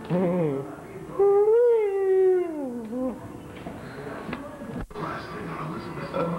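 A person's voice: a short call, then one long drawn-out wail that rises a little and then slides down in pitch, heard as a mock animal cry.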